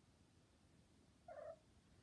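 Near silence, broken about a second and a half in by one short meow from a tabby cat.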